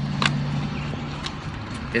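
Car cabin noise while driving: a steady low engine hum under road noise, with a few light clicks, the clearest about a quarter second in.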